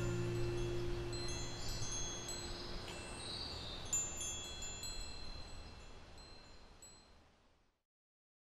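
Metal tube wind chimes ringing: scattered light strikes of high, clear tones that hang and die away, with one louder strike about four seconds in. The sound fades out to silence near the end.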